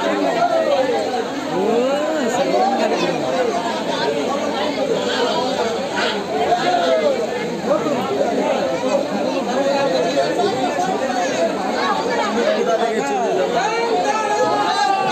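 Crowd chatter: many people talking over one another close by, with no single voice standing out.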